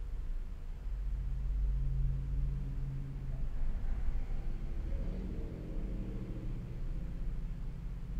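Low engine rumble of a motor vehicle, swelling about a second in, then a higher humming engine note with a shifting pitch from about five seconds in.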